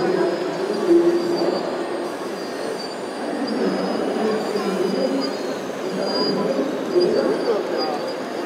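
Radio-controlled model hydraulic excavators digging and loading dirt, their electric motors and hydraulic pumps whining steadily, with a thin high whine running through.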